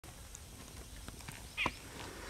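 Quiet outdoor background with a few faint ticks, and one short animal call, brief and curving in pitch, about one and a half seconds in.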